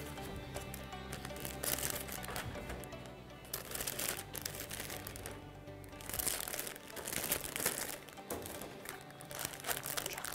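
Clear OPP plastic film bags crinkling in short bursts, several times, as scones are slipped into them, over quiet background music.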